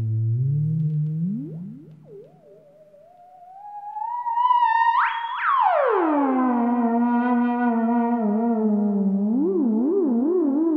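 Moog Werkstatt synthesizer played theremin-style from a Koma Kommander's hand sensors. A single buzzy tone starts low, fades briefly, then glides slowly upward. About five seconds in it leaps high and slides back down low, wavering up and down near the end.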